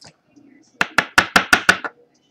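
A quick, evenly spaced run of about seven sharp clicks or taps in about a second.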